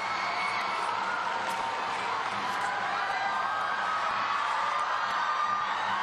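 Spectators in an ice rink's stands cheering as a steady din with no single loud event, some shouts rising and falling through it.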